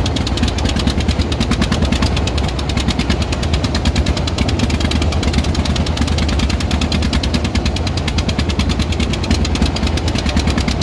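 A wooden boat's inboard engine running steadily under way, a loud rapid even chugging of fast repeated pulses.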